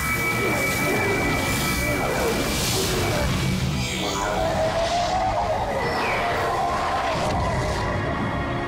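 Dramatic cartoon soundtrack music over a loud, continuous rush of noise from a light-grenade blast.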